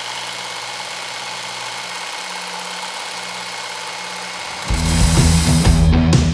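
Electric belt knife sharpener's motor running with a steady hum. About three-quarters of the way in, loud rock music with a heavy beat cuts in over it.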